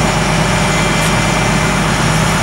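A vehicle engine idling steadily with a low, even drone.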